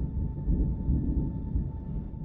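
Deep low rumble, thunder-like, slowly dying away, with a faint steady high tone held above it.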